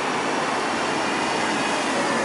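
Steady noise of passing road traffic, an even hiss with no breaks.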